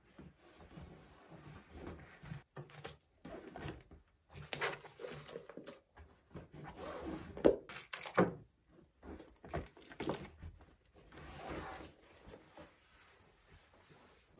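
Canvas tote bag being packed with a laptop, tablet and mouse: cloth rustling with a series of light knocks as the items go in and touch the table, the sharpest knock about seven and a half seconds in.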